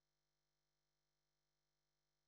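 Near silence: a muted feed with nothing but a faint, steady noise floor.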